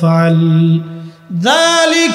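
A man's voice chanting a sermon in a melodic, sung style through microphones. He holds one long steady note, breaks off about a second in, then starts a new phrase on a rising note near the end.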